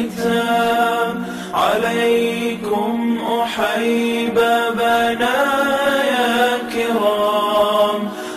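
Nasheed singing in Arabic: voices holding long sustained notes and gliding between pitches in the gap between sung lines.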